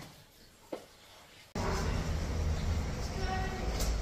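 A quiet room with one short click, then an abrupt cut to a steady low rumble of background noise with faint voices in it.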